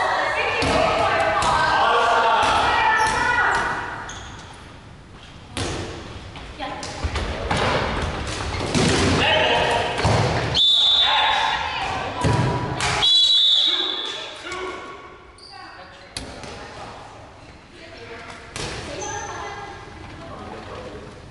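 Dodgeballs being thrown, hitting players and bouncing on a hardwood gym floor in a large echoing hall, a string of sharp thuds spread through the rally. Players' voices call out, loudest in the first few seconds, and two short high squeaks come midway.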